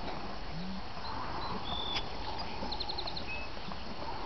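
Steady outdoor background noise with a few faint, short high chirps and a quick run of five high ticks near the middle.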